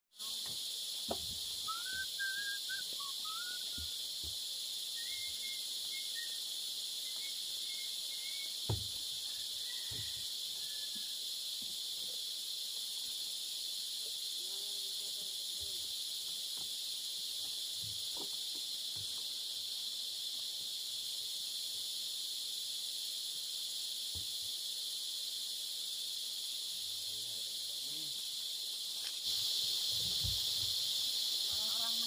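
Steady, high-pitched chorus of insects, with a few short bird-like chirps in the first ten seconds. Occasional knocks stand out, the sharpest about nine seconds in.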